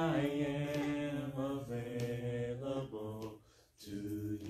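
A man singing a slow worship song solo, holding long drawn-out notes; the phrase ends a little past three seconds in and, after a short breath, the next phrase begins near the end.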